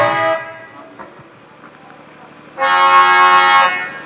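Harmonium: a held chord dies away, then after a short pause a steady harmonium chord sounds for about a second before fading near the end.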